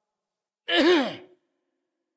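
A man's single short wordless vocal sound, lasting well under a second, its pitch rising then falling, with silence on either side.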